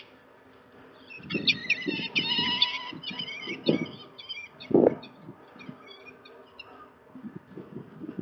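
Peregrine falcon calling: a quick run of harsh, repeated notes, then spaced single calls that thin out about three-quarters of the way through. Low thumps sound underneath.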